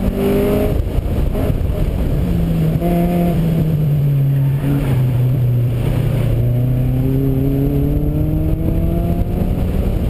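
Honda Civic EK9's four-cylinder engine being driven hard through an autocross course, with wind noise over it. The pitch drops right at the start as the driver lifts off, climbs briefly, holds low and steady through the middle, then rises steadily in the second half as the car accelerates.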